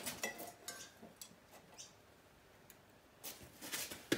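Faint metallic clicks and taps of a steel square and rule being handled and set against a stainless-steel propeller blade, with a louder scraping rustle near the end as the tools are positioned.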